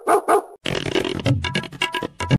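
A dog barking a few quick times in a row at the start, followed by background music with a steady beat.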